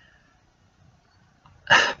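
A pause in a man's talk: near silence, then a short, sharp noisy sound from his breath or voice near the end as his speech starts again.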